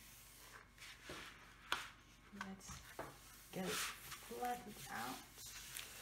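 Hands rubbing and sliding over the plastic cover sheet of a curling diamond painting canvas to flatten it: soft rustling, with one sharp tap about two seconds in.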